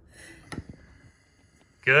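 A single light glass clink about half a second in, as a small conical flask is set down over the mouth of a glass test tube.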